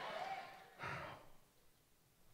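A man's faint voiced murmur trailing off in the first half-second, then a short sigh-like breath close to a handheld microphone about a second in.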